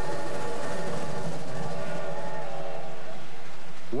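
Train sounds: a long whistle chord of several steady held tones over a low rumble.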